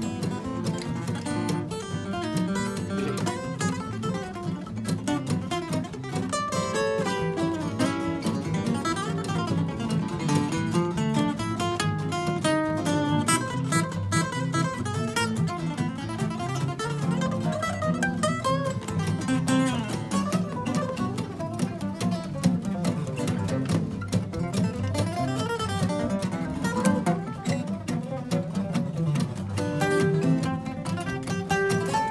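Four acoustic guitars playing together in a jam, a busy run of quick picked notes over a steady chordal accompaniment, without a break.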